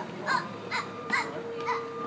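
A bird's short, harsh calls, repeated evenly about twice a second, over a faint steady hum.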